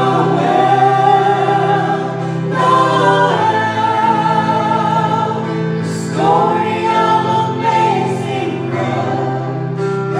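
Small mixed vocal group of men and women singing a Christmas song in harmony through handheld microphones, over a sustained low accompaniment. Long held notes give way to new phrases about two and a half seconds in and again about six seconds in.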